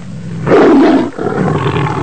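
Animal roar sound effect: a loud roar about half a second in, then a second, longer roar.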